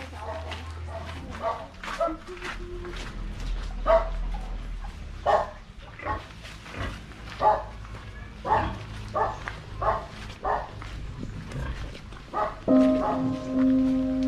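A dog barking over and over, short separate barks coming irregularly about every half second to a second, over a low hum. Music with steady held notes comes in near the end.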